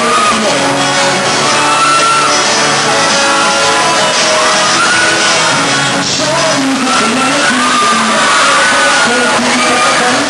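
A man singing live while strumming an acoustic guitar, the voice holding long, gliding notes over steady chords, in the echo of a large hall.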